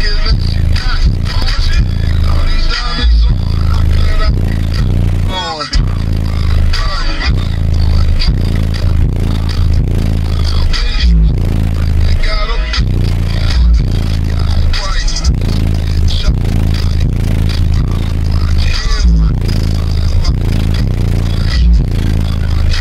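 Loud music with very heavy, deep bass played through a car audio system of SSA Evil subwoofers on an Ampere Audio 8.0 amplifier. The bass moves enough air in the cabin to push out a plastic bag hung in the open window.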